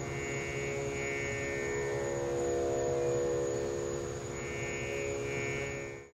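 Sustained instrumental drone of several steady held pitches ringing on after the closing music of a kirtan, swelling slightly midway and cutting off abruptly at the very end.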